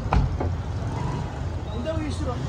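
Outdoor street ambience: a steady low rumble of traffic with faint voices of people nearby, and two short knocks near the start.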